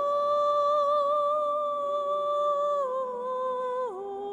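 Solo voice, sounding like a woman's, singing a long held note of a hymn, then stepping down in pitch twice near the end.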